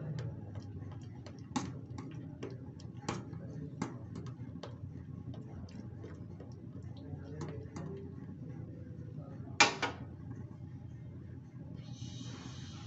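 Metal spoon clinking and scraping against a stainless steel pan while stirring thick kheer, in scattered light clicks. Two sharper clinks come close together a little before the end.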